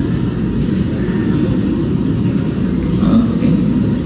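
Large-hall background noise: a steady low rumble with faint, indistinct chatter from a waiting audience.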